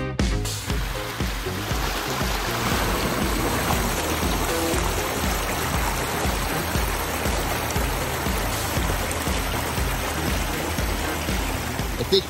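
Water splashing and rushing down a rock waterfall into a pond, steady throughout, with background music's regular bass beat underneath.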